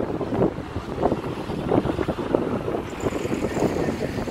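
Traffic noise of a police convoy of vans, a patrol car and motorcycles driving off: engines and tyres in a steady rough rumble, with wind buffeting the microphone.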